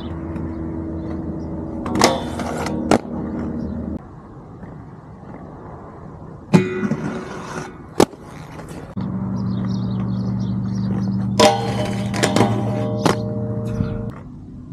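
Aggressive inline skates rolling with a steady wheel hum, broken by several sharp clacks and short scraping slides of landings and grinds. The sound shifts abruptly twice, at about four and nine seconds, as if separate clips were joined.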